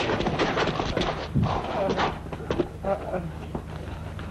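Kung fu fight soundtrack: short shouted yells and grunts from the fighters with several sharp hit sounds, over a steady low hum.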